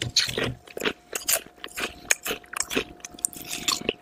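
Ridged potato chips crunching as they are bitten and chewed close to the microphone, in quick, irregular crunches.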